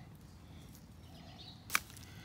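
Faint background noise with a single sharp click near the end.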